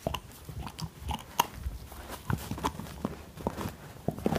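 Husky puppy gnawing on a chew bone: irregular crunches and clicks of teeth on the bone, several a second.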